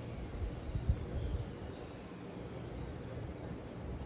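Faint outdoor background noise, with a few low thumps in the first second and a half.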